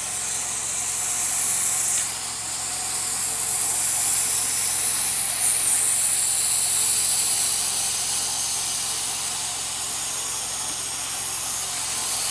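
Hydro-jetter's high-pressure water jet, rated at about 4,000 PSI, spraying inside a drain pipe as a steady high hiss, with a faint low hum beneath.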